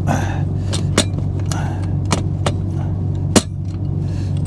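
Sharp clicks and knocks of a camera mount being handled against the truck cab's overhead locker, about six in all, the loudest about three and a half seconds in, over a steady low hum.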